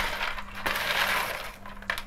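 Crisp oven-dried bread croutons rattling and clattering as they are tipped from a spoon onto a glass plate. The dry crackle fades about one and a half seconds in.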